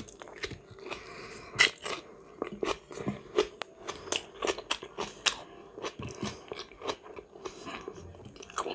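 Wet chewing and lip smacking of a person eating salted iwashi fish by hand: a string of irregular, sharp mouth clicks.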